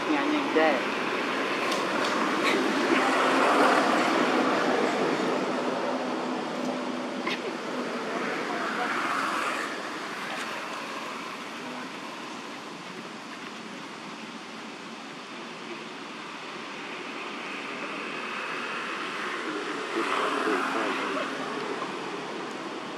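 Outdoor background of road traffic: a steady noise that swells as vehicles pass, loudest a few seconds in and again near the end, with voices of people talking mixed in.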